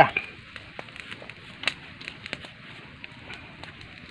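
Small open wood fire burning under a cooking pot, crackling with a few scattered sharp pops over a low hiss.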